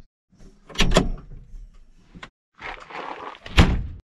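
Two sharp knocks, a click, then a rattling clatter that ends in a loud slam near the end.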